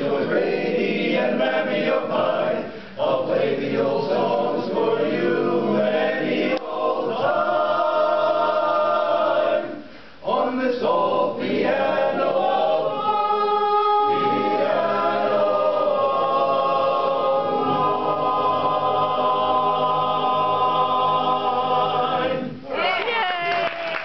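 Men's barbershop chorus singing a cappella in close four-part harmony, with a brief break about ten seconds in and long held chords through the second half as the song closes.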